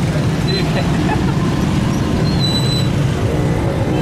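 Busy street traffic: a steady low rumble of motorcycle and auto-rickshaw engines running, with brief high-pitched tones about half a second in and again around the middle.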